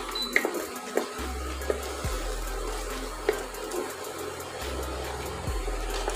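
Wooden spatula stirring and scraping thick moong dal halwa in a non-stick pot, with a few light knocks against the pot, over soft background music.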